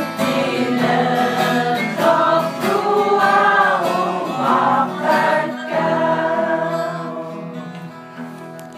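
Music: a choir singing with instrumental backing, growing quieter near the end.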